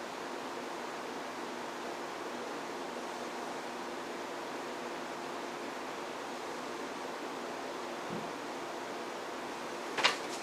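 Steady even hiss with a faint hum, the room tone and noise floor of the recording.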